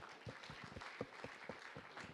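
Faint audience applause: a quiet, even patter of many claps.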